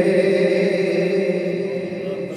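A man's solo voice chanting into a microphone, holding one long, slightly wavering note that fades near the end.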